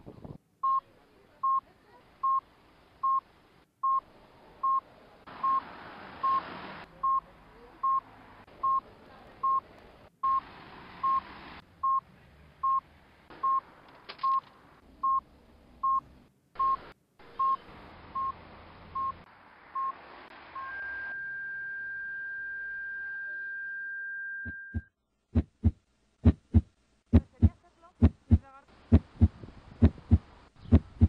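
Short electronic beeps repeating evenly, a little more than one a second, over changing outdoor ambience, giving way about two-thirds in to a steady high tone held for about four seconds. Then a beat of low thumps in quick pairs starts and runs on.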